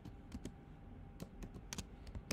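Keys clicking on a computer keyboard as text is typed: a few faint, irregular keystrokes, bunched more closely in the second half.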